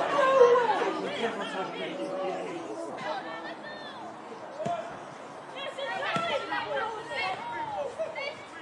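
Indistinct shouting and chatter of several voices from players and spectators at a football match, with a couple of sharp knocks about halfway through.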